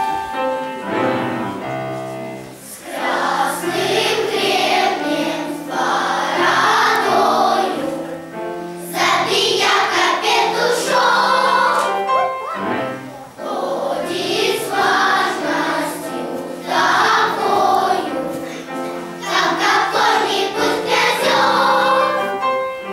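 Children's choir singing with piano accompaniment. The piano plays alone for the first couple of seconds, then the young voices come in about three seconds in and sing in phrases with short breaths between them.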